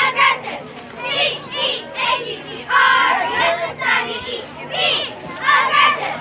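Youth football crowd on the sidelines, spectators and young players shouting and cheering during a play, many voices overlapping. The voices swell loudest about three seconds in and again near the end.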